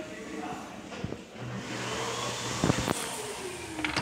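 Commercial tankless (flush-valve) toilet flushing: water rushing and swirling through the bowl, with a falling whine in the second half of the flush.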